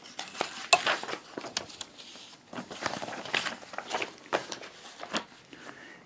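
Faint handling noise: scattered small clicks, taps and rustling as a folding knife and a steel ruler are moved about on a cloth placemat.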